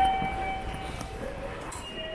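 Train station ambience at the ticket gates: a noisy background of footsteps and crowd, with a steady electronic tone held for about a second and a half.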